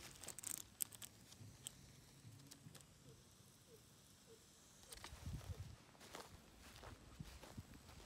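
Near silence, with a few faint sharp clicks in the first second and several soft low thumps about five seconds in.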